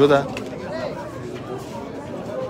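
Chatter of many men in a spectator stand, a murmur of overlapping voices, with one man's louder voice breaking off just at the start.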